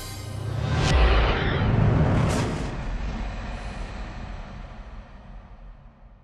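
Broadcast outro music sting: it swells to a heavy low hit about a second in, hits again about two seconds in, then rings away and fades out.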